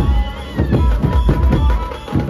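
Dhumal band music: large barrel drums struck with curved sticks in a fast, steady beat, with a high wavering melody line gliding over the drums near the start.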